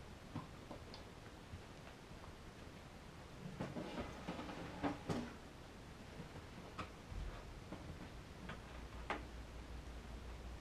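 Scattered light knocks and clatters of things being handled and moved about, busiest about four to five seconds in, with a few single knocks later. A low steady hum comes in about seven seconds in.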